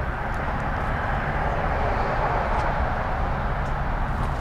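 Steady road-traffic noise at a street intersection: an even rumble and hiss with no single event standing out.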